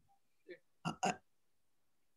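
Mostly dead silence on a video-call line, broken by a faint short throat or mouth sound from a man about half a second in and two brief ones around a second in, between his spoken phrases.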